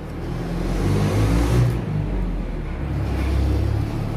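Low engine rumble of a motor vehicle, swelling about a second in and holding until near the end.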